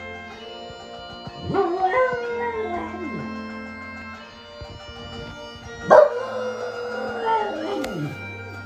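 A Jack Russell cross dog howling along to bagpipe music, whose steady drone carries on underneath. There are two long howls: one about a second and a half in that rises and then falls away, and a louder one about six seconds in that lasts to the end.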